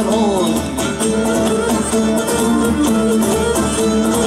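Live Cretan sousta dance music, instrumental: a bowed fiddle-like melody, typical of the Cretan lyra, over a strummed laouto and drums.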